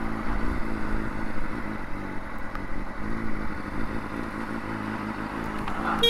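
Honda CBR600RR inline-four engine running steadily at low revs as the bike rolls slowly along.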